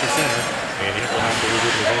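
Mostly speech: an ice hockey play-by-play announcer calling the game.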